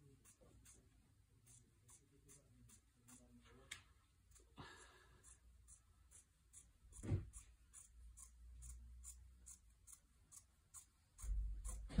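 Quiet handling of cotton fabric on a tiled floor: a short rustle, a soft thump a few seconds later, and a louder low thump near the end as the scissors are set to the fabric for cutting.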